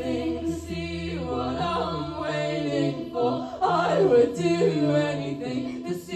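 Indie rock band playing live: sung vocals over sparse electric guitar, with a low bass note that drops out about two seconds in, leaving the voices nearly alone.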